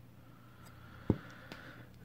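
A single sharp knock about a second in as a small FPV quadcopter is set down on the table, with faint room noise around it.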